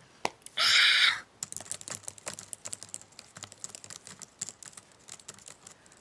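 Typing on a computer keyboard: quick, irregular key clicks. About half a second in there is a short, loud burst of noise.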